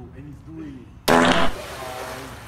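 A person diving into a swimming pool: a loud splash about a second in, starting suddenly and lasting under half a second, followed by softer water churning.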